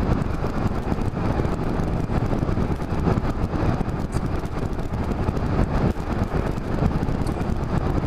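Yamaha Majesty maxi scooter cruising at steady speed: a steady mix of wind, tyre and engine noise with no marked changes.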